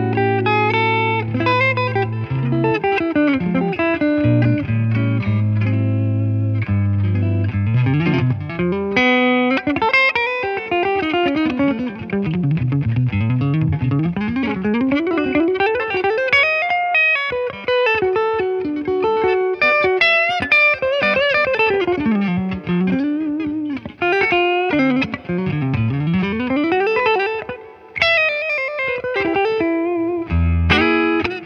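Iconic Guitars Elegante offset-body electric guitar played solo. Held low chords ring for the first several seconds, then quick single-note runs sweep down and back up the neck several times.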